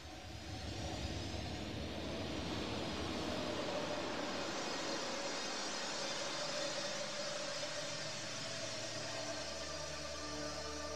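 A wide rushing roar of noise with a low rumble underneath, like a jet or rocket engine. It swells up in the first second or so and holds steady. Steady musical tones come in near the end.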